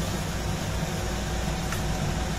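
Steady low hum with an even hiss, with no distinct knocks or clatter.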